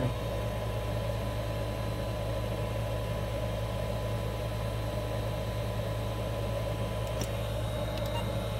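Steady low electrical hum from the bench test setup, with a faint 1 kHz test tone running through it that cuts off about seven seconds in.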